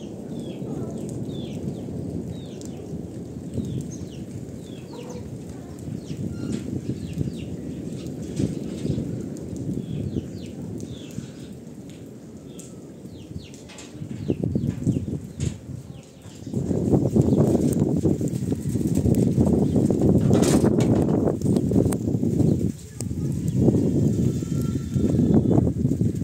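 Wind buffeting the microphone as a low rumble that gets stronger and more constant a little past halfway.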